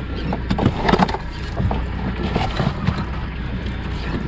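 A 90 hp Yamaha outboard running with a steady low hum, under scattered rustles and knocks of the trawl net's tail bag and rope being handled in a bucket, busiest about a second in.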